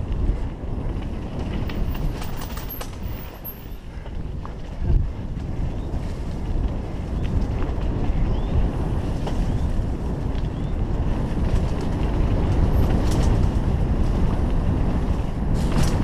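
Mountain bike rolling fast down a dirt singletrack: a steady rumble of tyres on dirt and wind buffeting the camera microphone, with rattles and clicks from the bike over bumps and a thump about five seconds in. It grows louder over the last few seconds.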